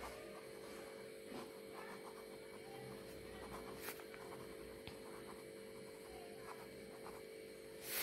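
Faint scratching of a pen writing on paper, over a steady electrical hum, with one small sharp click just before the middle.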